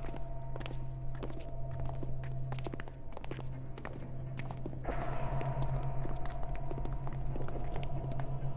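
Footsteps of several people walking, a scatter of irregular steps over a sustained low drone of background music that swells about five seconds in.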